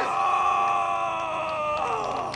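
A man's long, held yell, one voice rising into a steady cry and falling away near the end: a shouted battle cry during a hand-to-hand combat and block-breaking demonstration.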